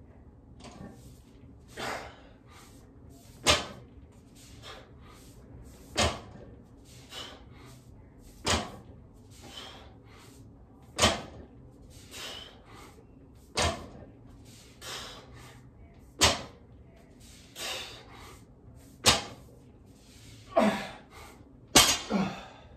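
A barbell loaded with 225 lb of rubber bumper plates touching down on the floor mat with a sharp thud about every two and a half seconds through a set of deadlifts, about eight times. Softer hard breaths come between the touchdowns.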